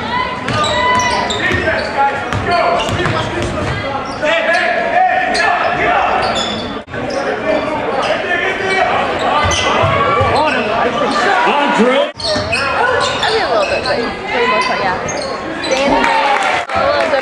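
Live basketball game sound in an echoing gym: spectators' and players' voices mix with a ball dribbling on the hardwood. The sound drops out briefly twice, at clip edits about 7 and 12 seconds in.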